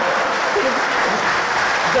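Audience applauding steadily, with a man's voice faintly over it.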